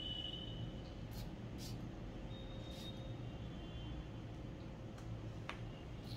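Quiet room with a few faint, short hisses of a perfume atomizer spraying eau de toilette.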